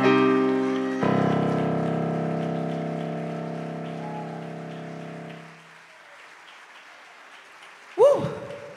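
Stage keyboard playing the closing chord of a song: a new chord struck about a second in and held, fading away over the next four seconds or so.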